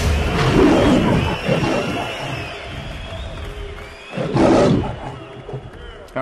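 Closing music of a promo trailer fading out, with a lion's roar sound effect; a short, loud roar-like burst comes about four seconds in and dies away.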